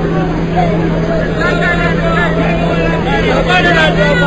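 Speech: a voice talking over a steady low hum and background noise.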